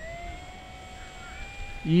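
Electric motor and propeller of a BlitzRC 1100 mm Spitfire RC plane running at low power while it rolls on grass: a steady whine that dips slightly in pitch, then rises a little near the end as the throttle is eased in for takeoff.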